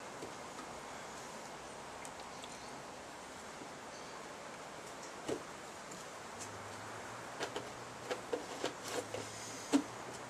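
Faint steady background hiss with a few light clicks and knocks from gloved hands handling a plastic milk jug and its cap. The knocks come once near the middle, then several in the last few seconds, the loudest just before the end.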